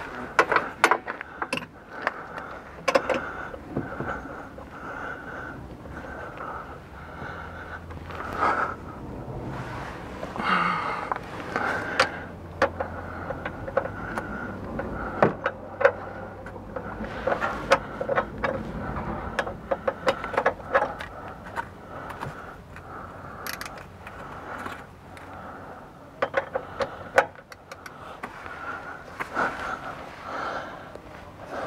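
Irregular metal clinks, knocks and scrapes of a socket and torque wrench being fitted and worked on a van's front upper strut bolt, checking that the bolt is still tight.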